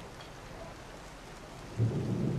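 A steady soft hiss, then a sudden low rumble near the end that keeps going.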